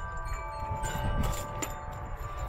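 Several chime-like tones ringing on together and slowly fading, with a couple of faint clicks about a second and a half in from the coax cable and connector being handled.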